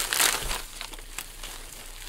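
Gift wrapping paper and plastic packaging crinkling and tearing as a small present is unwrapped by hand. A burst of rustling comes in the first half second, then softer crinkles follow.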